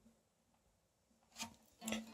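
Very quiet handling of a bağlama: a faint string hums low and steady, with a small tap about 1.4 s in and a brief, slightly louder string sound near the end as the neck is moved.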